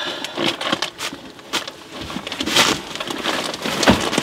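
Irregular crackling, scraping and light knocks of building materials being handled, with a sharper knock near the end.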